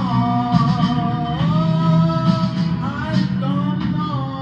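A man singing long held, wavering notes, accompanying himself on an electric guitar.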